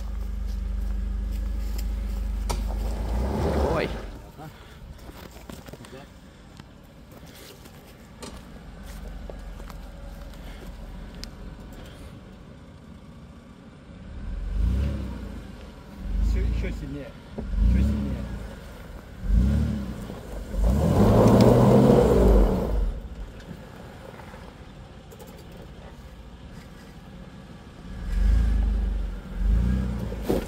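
Toyota Land Cruiser Prado SUV's engine working through deep diagonal ruts off-road: a steady low drone at first, then a run of short rev surges from about halfway, the loudest about two-thirds in, as the driver feeds throttle to crawl the wheels over the cross-axle holes.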